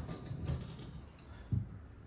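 Handling sounds of a differential assembly being turned and set down on a concrete floor, with a dull knock about one and a half seconds in.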